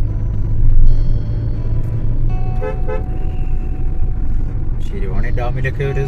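Steady low rumble of a car driving on the road, with a vehicle horn sounding a steady tone about a second in, and another held tone through the middle.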